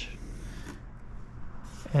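Pencil, its side cut flat, scratching along the edge of transfer tape laid on a car door, drawing a line; the scratching stops less than a second in.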